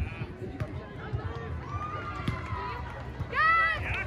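Beach volleyball rally: two sharp hits of the ball, about a second and a half apart, and women's voices calling out. A loud, high-pitched shout comes near the end.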